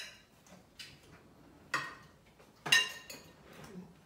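Serving utensil clinking against a serving bowl and plates as food is dished out: about four light clinks, the loudest about two-thirds of the way in with a brief ring.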